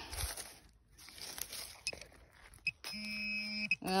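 Scraping and rustling as soil and dry grass are handled at a dug hole, then near the end a steady electronic tone of just under a second from an XP MI-4 metal-detecting pinpointer, signalling metal in the hole.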